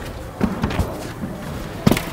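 A few dull thuds of feet landing on an exercise mat during a jumping burpee-style movement, the loudest near the end.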